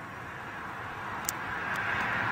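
A car passing on the road, its tyre and engine noise slowly growing louder, with a faint click about a second in and another soon after.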